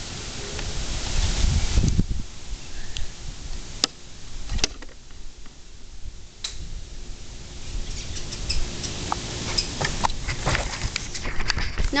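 Wind rumbling on the microphone, with a few single sharp clicks and knocks, then a quicker run of clicks and taps near the end.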